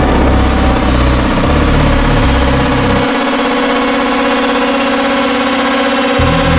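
Electronic music: a sustained, buzzing distorted synth drone over a low bass line that moves in stepped notes. The bass drops out about halfway through and comes back just after the end.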